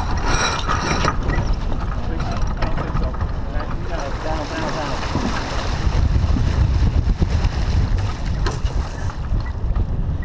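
Wind buffeting the microphone and water rushing along the hull of a sailboat under way, a loud, steady rumble that grows stronger in the second half, with crew voices faint underneath.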